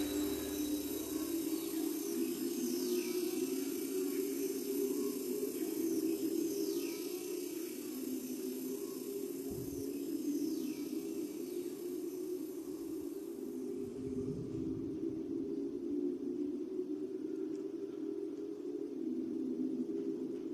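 Live electronic ambient music: a steady low drone of layered, slowly shifting tones. In the first half, several high falling whistle-like glides sound over it, a few seconds apart.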